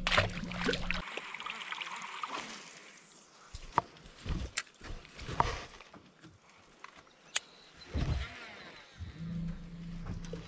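A small smallmouth bass splashes back into the river water, then scattered sharp clicks and low knocks from a fishing rod and baitcasting reel being handled.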